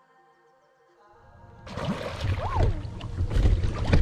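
Background music fades out in the first second and a half. Then come loud wind buffeting on the microphone and water sloshing and splashing at the surface as tarpon move below the dock.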